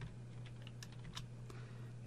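Typing on a computer keyboard: a scattering of faint, quick keystrokes.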